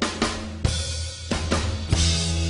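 Rock drum kit played within a live band: several snare and bass drum hits with cymbal wash, over a steady bass line.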